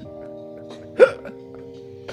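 A man's single short, sharp laugh about a second in, the loudest sound, over a held chord of several steady musical notes that starts at the outset.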